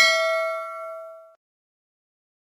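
A single bell ding sound effect for a notification-bell icon being clicked: one strike that rings with several clear pitches and fades out about a second and a half in.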